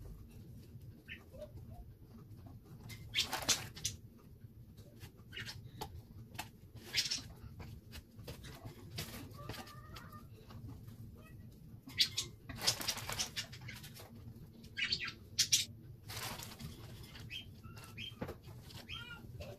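Crinkling of a plastic bag and light handling of mini marshmallows on a foam plate, in short scattered rustling bursts over a low steady hum.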